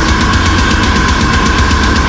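Deathcore metal song: heavily distorted guitars and fast, dense drumming, with a sustained two-note high melody line held on top throughout.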